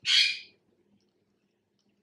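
A short, high-pitched editing transition sound effect, about half a second long, right at the start, then near silence.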